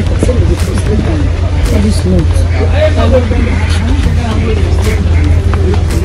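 People talking in the background, with voices overlapping, over a steady low rumble.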